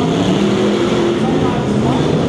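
Engines of pro-modified off-road race trucks running hard on the dirt track, their pitch rising and falling as they power through a turn.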